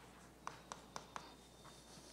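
Faint chalk on a blackboard: four short taps about a quarter second apart, then one fainter tap, in a quiet room.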